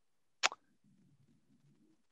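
Near silence apart from one short, soft pop about half a second in.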